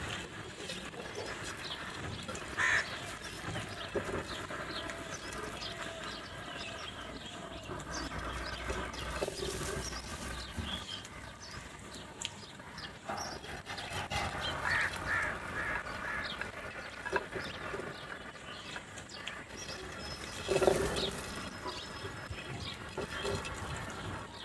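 A flock of house crows cawing at intervals, with the loudest calls a few seconds in, in a cluster past the middle and near the end. Many small clicks and taps run under the calls, fitting beaks pecking grain from a dish.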